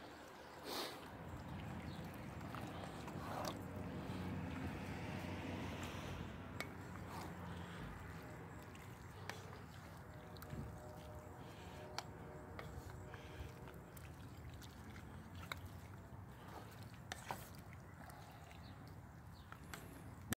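Wooden spatula stirring chunky meat and tomatoes in a Lodge cast iron dutch oven: quiet wet squelching with scattered light clicks of the spatula against the pot, over a steady low hum.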